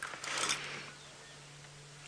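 A Cape buffalo bull giving one short, breathy snort, about half a second long, at the very start. It is the snorting of a bull ill at ease, shown by its head swings.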